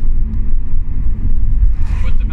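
Low, steady rumble of a moving car heard from inside the cabin: road and engine noise. A voice starts just before the end.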